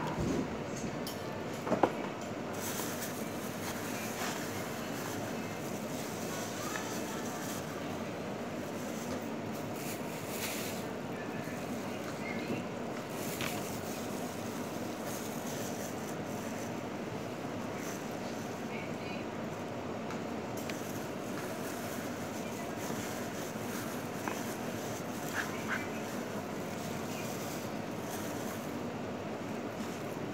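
Steady background noise with a faint, indistinct murmur. There are two light knocks in the first two seconds, and soft crinkles and clicks from eating by hand in a plastic glove.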